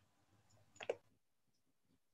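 Near silence, with a single brief click a little under a second in.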